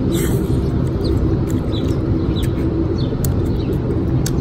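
Steady low outdoor rumble, with a small bird chirping briefly several times above it and a few faint clicks.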